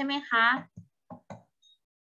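A woman speaking Thai through a video call for well under a second, followed by three short knocks about a second in.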